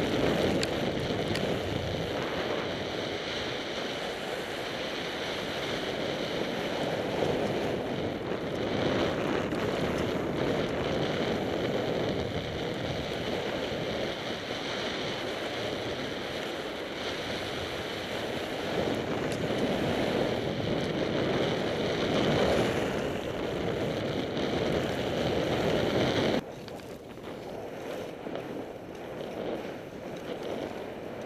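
Wind buffeting an action camera's microphone while its wearer slides fast down a snowy piste, mixed with the rushing hiss of edges carving the snow. The noise is steady and loud, then drops to a quieter level a few seconds before the end.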